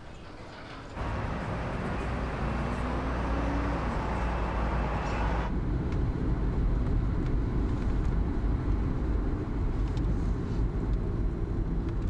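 City street traffic with cars driving past, one engine note rising briefly. About five and a half seconds in, the brighter street sound cuts off, leaving the low, muffled rumble of a car heard from inside the cabin while it is driving.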